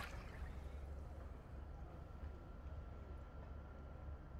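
Faint splashing and lapping of water as a swimming animal breaks the surface, over a low steady rumble.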